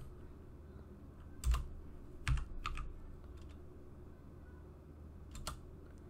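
Computer keyboard keystrokes: four separate key presses spread over the seconds, one of them entering a router command, over a steady low hum.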